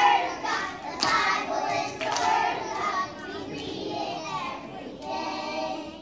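A group of young children singing a song together, with a few sharp claps in the first couple of seconds.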